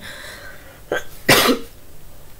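A woman coughs twice: a short cough about a second in, then a louder one.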